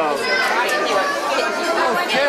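Several voices talking over one another: the steady chatter of a busy restaurant dining room, with no single clear speaker.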